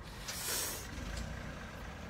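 Steady low rumble of road traffic, with a brief hiss about half a second in.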